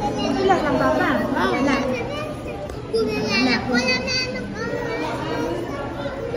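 People talking at a table, with high-pitched children's voices rising and falling loudly about a second in and again midway, over background chatter.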